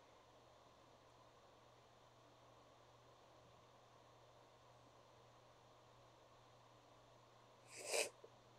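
Near silence: room tone with a faint steady low hum, broken by one short noise near the end.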